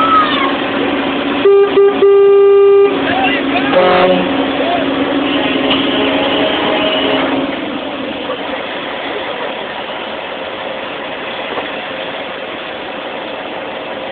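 A vehicle horn sounds twice, a short toot and then a held blast of about a second, over the steady running of a truck engine heard from inside the cab in slow traffic.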